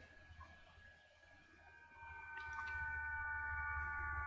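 Faint room tone. About two seconds in, a steady electronic whine made of several high, even tones rises in level and holds, with a couple of faint clicks.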